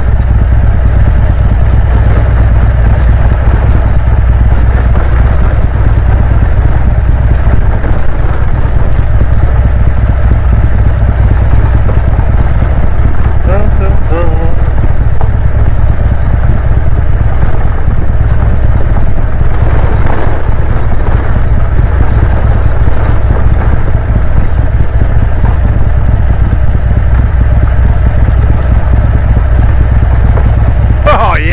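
Harley-Davidson V-twin engine idling in neutral as the motorcycle coasts downhill on a gravel road, under steady wind rumble on a helmet-mounted microphone, along with tyre noise.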